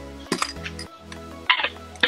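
A metal trading-card mini tin clinking twice as its lid is worked open, about a third of a second in and again at about a second and a half, over background music with a steady bass line.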